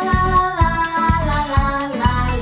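A children's pop song: a child's voice sings "fa la la la la" over a backing track with a steady beat.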